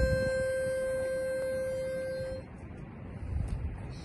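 A pitch pipe blown to give the quartet its starting note: one steady reedy note held for about two and a half seconds, then cut off, over a low rumble of wind on the microphone.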